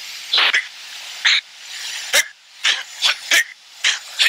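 A person doing the anti-G straining manoeuvre under a sustained pull of about seven G: short, forceful grunting breaths, roughly two a second, heard over an oxygen-mask intercom with a steady hiss behind them.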